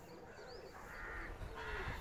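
Faint crow cawing: two short harsh caws about a second apart, with a few small high bird chirps in the background.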